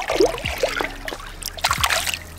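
Lake water splashing as a hand-held smallmouth bass is released, with a few short splashes, the biggest cluster near the end as the fish kicks free.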